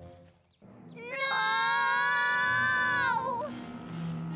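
A cartoon character's long, high-pitched cry of "Nooo!", held for about two seconds with its pitch falling as it ends.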